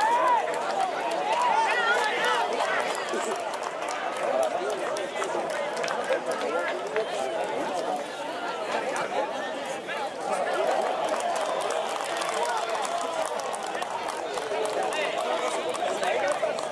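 Spectator chatter at a football ground: several voices talking and calling over one another without a break.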